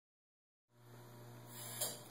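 Silence for under a second, then a faint, steady low electrical hum with light room hiss.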